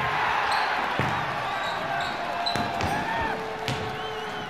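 Indoor gym ambience: several short squeaks like sneakers on a gym floor, a few ball impacts, and a steady murmur of crowd voices.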